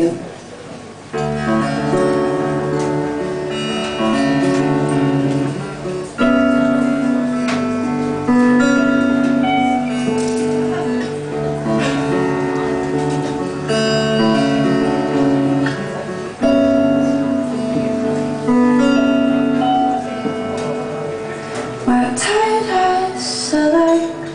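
Acoustic guitar played live as a song's introduction: a picked chord pattern with ringing notes, starting about a second in and coming round roughly every five seconds.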